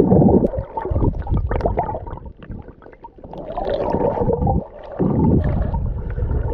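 Underwater sound picked up by an action camera's microphone while snorkeling: a muffled rumbling of water with scattered crackles, dipping quieter about halfway through before swelling up again.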